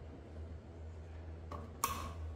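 Low steady hum, then, near the end, a short metallic clink from a hand tool on the bike's rear brake caliper bolts as the tool is drawn away.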